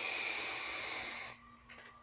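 A long drag on a Smok GX350 vape mod with a Beast tank: a steady hiss of air drawn through the tank and coil, cutting off about a second and a half in.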